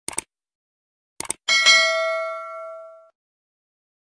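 Subscribe-button animation sound effect: a pair of quick mouse clicks at the start and another pair about a second in, then a bright bell ding that rings out and fades over about a second and a half.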